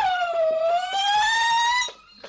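A woman's zaghrouta (ululation): one long, high wavering call that dips in pitch and rises again, then stops sharply near the end.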